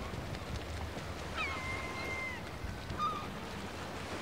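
Outdoor ambience of steady low wind and water rumble, with a bird giving one long, level call about a second and a half in and a short chirp near the end.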